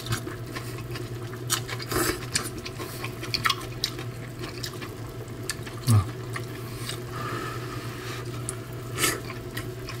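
Close-up eating sounds: slurping noodles and wet chewing, with scattered short clicks and smacks, over a steady low hum and the bubbling of simmering hot pot broth. A short falling "mm" about six seconds in.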